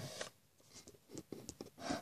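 Faint scattered clicks and rubbing from a jar full of water beads being handled.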